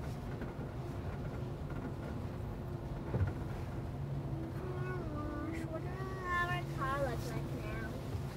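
Steady drone of automatic car wash machinery heard from inside the car's cabin, a low hum with a held tone, with a single knock about three seconds in. Wavering voice sounds join over the second half.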